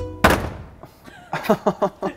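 A single flat-handed slap on a front door about a quarter of a second in, a short thud. The door's lock is broken, so a blow like this can push it open.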